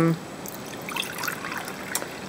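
Vinegar being poured from a plastic measuring cup into a saucepan of brine, a steady trickle of liquid.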